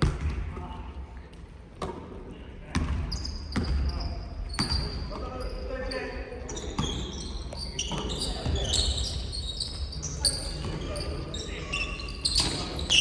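A basketball bouncing on a hardwood gym floor, with single knocks spaced irregularly about a second apart, and sneakers squeaking sharply on the floor as players move, more often in the second half. Players' voices call out in a large, echoing hall.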